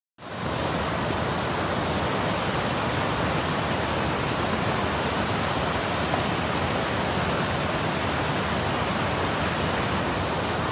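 Steady rush of water from a large waterfall cascading down stepped rock ledges, fading in over the first half-second.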